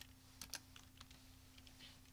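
A few faint, scattered keystrokes on a computer keyboard as a name is typed and corrected, over a low steady hum.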